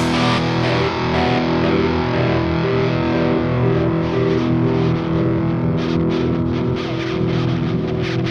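Distorted electric guitar with effects, holding sustained ringing tones after the drums drop out: the outro of a rock song.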